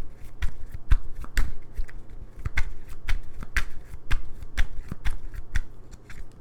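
A tarot deck being shuffled by hand: an irregular run of sharp card slaps and flicks, several a second, thinning out near the end.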